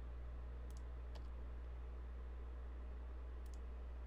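A few faint, sharp computer keyboard clicks, spaced out as shortcut keys are pressed, over a steady low electrical hum.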